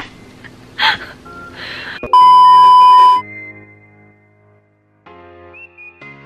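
A very loud, steady single-pitch beep lasting about a second, about two seconds in. It is followed by background music with held notes that drops out for about half a second and then comes back. Before the beep there are short breathy noises and a sharp burst.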